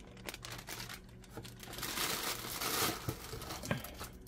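Plastic inner bag of a cake mix crinkling and crackling as it is shaken out over a mixing bowl, with a run of small crackles that is busiest about two seconds in.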